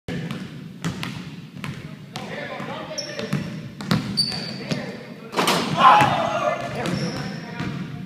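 A basketball is dribbled on a hardwood gym floor, bouncing sharply again and again, with short high sneaker squeaks. About five and a half seconds in, people shout loudly.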